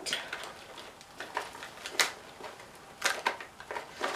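Makeup containers and tools being handled on a bathroom counter: a handful of small clicks and taps, the sharpest about two seconds in and a quick cluster near the end.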